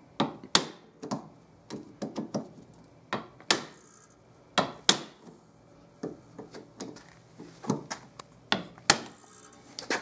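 Hammer striking the end of a hand impact screwdriver: about fifteen sharp metal taps at uneven intervals, the hardest with a short high ring. Each blow shocks and turns a corroded, stuck Phillips screw to free it without rounding the head.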